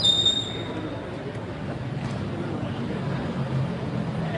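Street noise at a bus terminus, with the low rumble of idling vehicles. A loud, shrill, steady-pitched squeal lasting under a second opens it.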